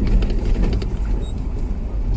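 Car driving slowly on an unpaved track, heard from inside the cabin: a steady low rumble of engine and tyres, with a few faint ticks.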